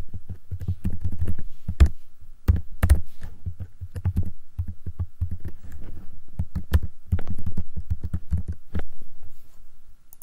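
Computer keyboard being typed on in quick, uneven runs of keystrokes, each with a dull low thump, as season years are entered into a text box.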